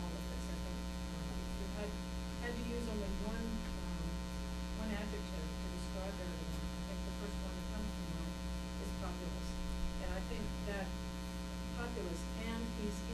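Steady electrical mains hum with many evenly spaced overtones, with a faint, indistinct voice coming and going beneath it.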